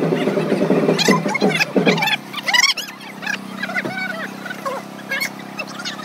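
People's voices talking nearby, with a steady low hum from about two seconds in; the firecracker string is not yet set off.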